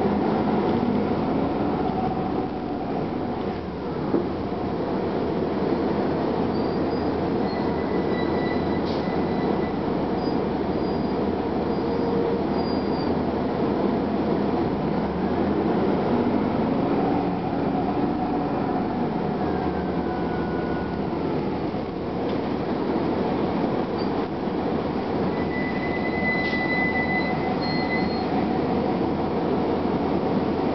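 Detroit Diesel Series 50 engine and Allison B400R automatic transmission of a 1999 Gillig Phantom transit bus, heard from inside the cabin while the bus is moving, with road noise and cabin rattles. The drivetrain note rises and falls a couple of times as the bus gathers speed and changes gear. There is a single sharp knock about four seconds in and brief high squeals later on.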